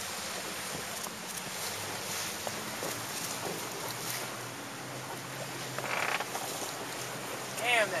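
Wind and water noise around a small boat on open water, over a low steady hum. A short high-pitched sound comes about six seconds in.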